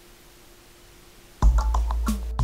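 A faint steady hum, then about one and a half seconds in music starts abruptly: a deep bass note with quick percussive clicks.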